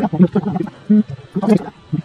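A person speaking in short phrases with brief pauses, no other sound standing out.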